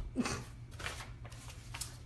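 Fingers rubbing and tapping on the recording phone, making irregular scratchy handling noises close to the microphone, after a brief laugh.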